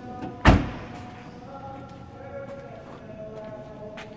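The trunk lid of a 2015 Nissan Altima sedan slammed shut: one sharp slam about half a second in.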